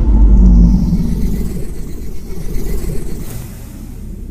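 Logo-intro sound effect: a deep boom right at the start that fades into a long low rumble over the next few seconds, with a faint airy hiss above it.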